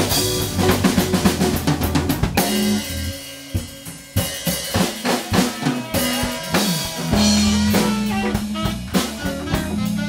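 Live small-band jam with drum kit, electric bass, electric guitar and saxophone playing together. About two and a half seconds in the band thins out to a quieter passage for a second or so before the drums come back in, and a long held low note sounds near the end.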